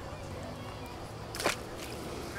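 A small sea bass thrown back lands in the water with a single short splash about one and a half seconds in, over steady outdoor background noise.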